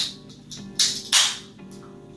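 A soda can being opened, with two short hisses of escaping gas about a second in. Background music with a plucked guitar plays throughout.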